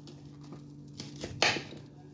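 A short rustle and clatter of kitchen things being handled, with a few clicks and then a brief burst about a second and a half in, over a low steady hum.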